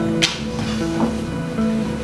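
Background music, with a short sharp tap about a quarter second in and a fainter one about a second in, from hands handling paper on a journal page.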